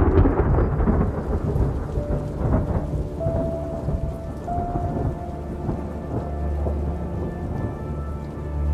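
Thunderstorm: a sudden thunderclap right at the start rolls into a low rumble over steady rain, and the rumble swells again near the end.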